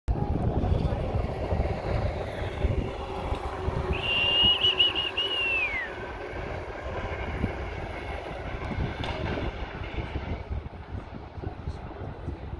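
Wind buffeting the microphone, with faint voices in the background. About four seconds in, a high whistle warbles for about two seconds and then glides down in pitch.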